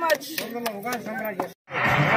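Crowd chatter with several sharp clicks mixed in, cut off abruptly about one and a half seconds in. Music starts right after the cut, near the end.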